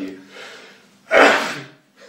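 A loud, abrupt rush of breath from a man about a second in, without voice, fading out over about half a second.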